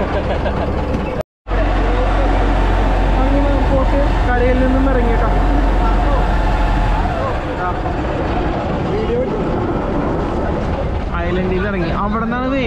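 Boat engine running with a steady low drone that fades away about seven seconds in, under people talking. The sound cuts out briefly about a second in.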